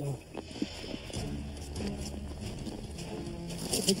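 Footsteps in snow with a low sustained music bed under them.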